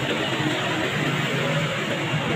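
Faint guitar music over a steady noisy background.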